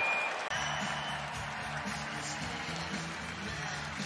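Music played over the arena's sound system during a stoppage in play, held low notes changing in steps, with crowd noise underneath.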